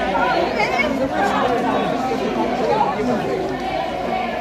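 Overlapping chatter of a crowd walking past, many voices talking at once with no single speaker standing out.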